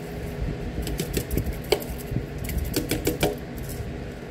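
Ground pepper being shaken from a plastic shaker over a stainless steel pot: an irregular run of quick, sharp clicks and ticks.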